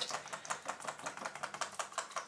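Small wire hand whisk beaten fast in a plastic jug of cold-process soap batter, its wires clicking against the jug about ten times a second as fragrance oil is stirred in.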